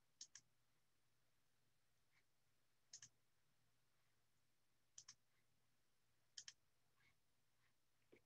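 Faint computer mouse clicks over near silence: four quick double clicks, a couple of seconds apart.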